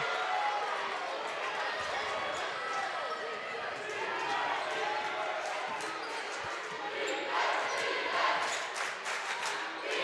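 Gym sound during a high school basketball game: a basketball being dribbled on the hardwood floor over a steady murmur of spectators' chatter.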